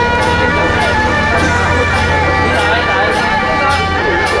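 Loud temple-procession music: several long, held reedy tones over regular crisp percussion strokes about every half second to second, with a crowd talking.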